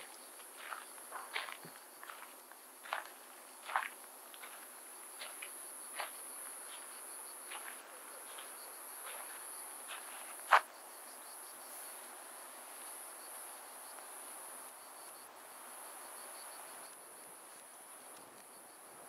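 A steady, high-pitched drone of insects in the surrounding pine forest. Scattered footsteps sound over it through the first half, the sharpest about ten seconds in.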